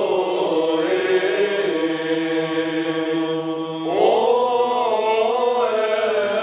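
Orthodox church chant: a sung melody of long held, slowly sliding notes over a steady low drone, the melody rising about four seconds in.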